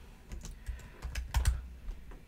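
Typing on a computer keyboard: a quick run of about half a dozen keystrokes as a word is typed into a text field.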